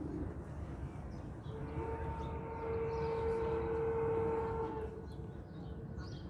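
A distant horn sounding one long, steady note for about three seconds. It swells and then fades, over a low outdoor rumble.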